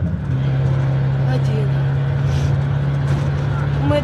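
Van engine and road noise heard from inside the moving vehicle's cabin: a steady low drone that steps up in pitch just after the start and then holds.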